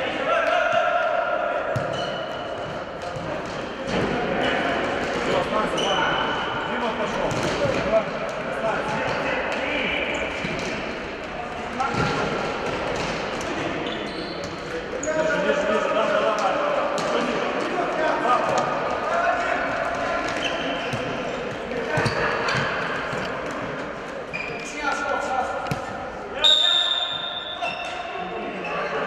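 Futsal match in an indoor sports hall: players' voices and shouts echoing, with the ball thudding off feet and the hard court now and then. A brief high-pitched shrill sound near the end is the loudest moment.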